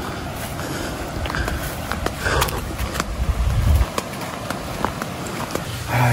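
Footsteps on a dirt footpath, with grass and leaves brushing past, over a low rumble on the microphone that stops about four seconds in.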